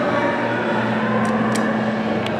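Elevator machine running with a steady electric hum, heard from the landing with the car doors closed; a couple of faint clicks come partway through.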